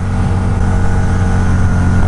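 Harley-Davidson V-Rod Night Rod's V-twin engine running steadily while riding at road speed, with wind and road noise, heard through a mic inside the helmet.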